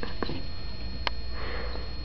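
A small dog sniffing at the carpet, a short breathy sniff near the end, with a single sharp click about a second in.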